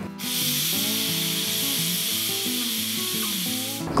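Pressure cooker whistling: steam escaping under the weight on the lid as a steady high hiss that starts and stops abruptly, a sign the cooker is up to pressure. Light background music plays underneath.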